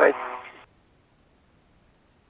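Spacewalk radio loop: the end of a spoken call, thin and band-limited like a radio transmission, cutting off about half a second in.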